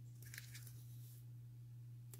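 Near silence: a steady low hum of room tone, with a faint rustle from about a quarter second to a second in as hands handle a paper-covered cup and tape.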